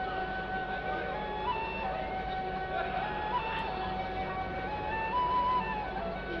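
Egyptian Arabic orchestra of violins and qanun playing the instrumental introduction to a song: a slow melody of long held notes stepping up and down.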